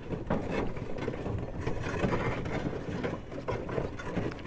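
Horse-drawn sleigh on the move over packed snow: irregular clicking and knocking over a steady low rumble.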